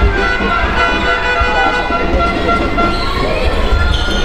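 Music with held notes sounding through a basketball arena, mixed with the crowd's voices.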